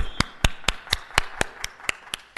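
One person clapping, evenly paced at about four claps a second.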